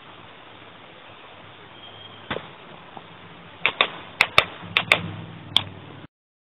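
A run of sharp, irregular clicks over a steady hiss: one a little over two seconds in, then about seven more in quick succession over the last two and a half seconds.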